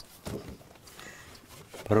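Faint handling of paper and folders at a table, with a short low murmur, then a voice starts speaking near the end.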